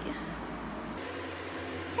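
Steady background hiss of room noise with no distinct event; the low hum changes character about a second in.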